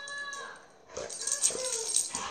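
A dog whining in a steady high tone that fades out about half a second in, followed by scuffling and rustling of fur and hands as the dog is petted and plays.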